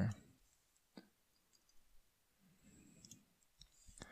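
Faint computer mouse clicks in near-quiet: one sharp click about a second in and a few fainter ticks near the end.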